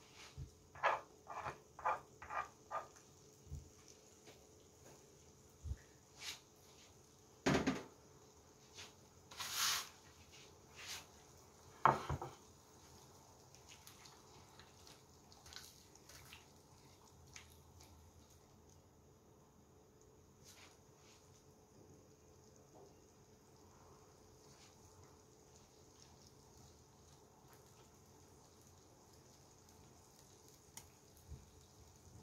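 A ladle knocking and scraping in a nonstick wok of vegetables and meat in broth: about five quick strokes in the first few seconds, then three louder knocks spread over the next several seconds. After that only a faint steady hiss remains.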